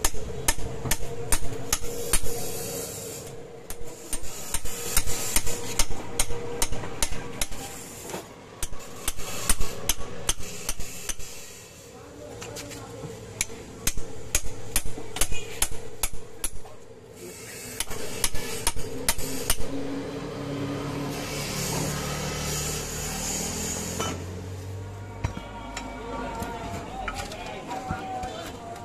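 Bursts of rapid metal knocks and scraping, each a few seconds long with short pauses between them, as a steel cutting bar is worked against the old copper windings inside a generator stator to cut the coil out for rewinding.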